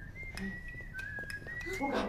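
A quiet whistled tune: one thin, high note that wavers and steps between a few pitches, with a few faint clicks.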